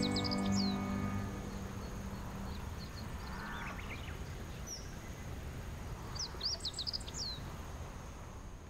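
Background music fading out in the first second, leaving outdoor pond ambience: a faint steady hiss with two short bursts of quick high bird chirps, one near the start and one about six to seven seconds in.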